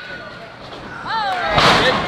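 A single heavy thud about three-quarters of the way through as a wrestler's dropkick lands and bodies hit the wrestling ring's mat, with a booming ring bump.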